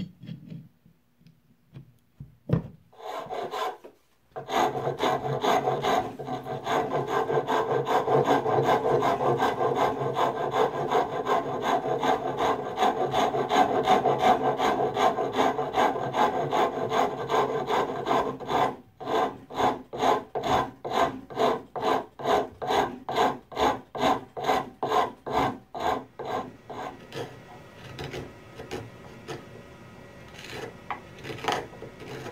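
A hand file rasping a mahogany handle block clamped in a bench vise. A few short knocks come first. About four seconds in, fast continuous back-and-forth strokes start, slow to separate strokes about two a second after the midpoint, and grow fainter toward the end.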